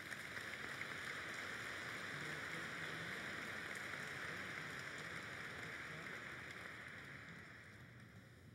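Audience applauding steadily, then dying away near the end.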